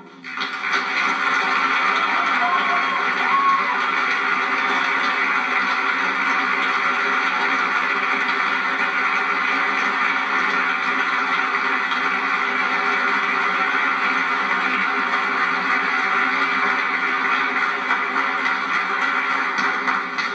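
An audience applauding steadily and without a break, with music underneath.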